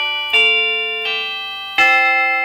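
Maas-Rowe Vibrachime, an early-1950s tube-driven electric chime made as an add-on for a church organ, played note by note: three struck notes, each ringing like a bell and slowly fading, a new strike about every three-quarters of a second.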